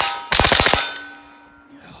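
Suppressed 5.56 AR pistol (PSA 7-inch upper) fired rapidly, several shots in quick succession. The string stops a little under a second in, and the echo and ring die away over the next second.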